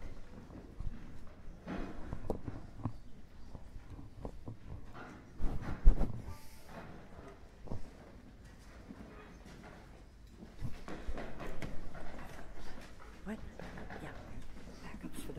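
Audience room ambience: an indistinct murmur of voices with scattered knocks and shuffling, and one loud thump about six seconds in.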